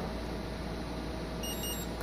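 Steady electrical hum and hiss from a hobby LiPo balance charger setup, with two faint, short high beeps about one and a half seconds in as the charger's button is held to read the battery's capacity.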